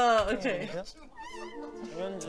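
A woman's loud, high-pitched laughing squeal at the start, falling in pitch and dying away within half a second. From about a second in, a quieter warbling tone plays over light background music.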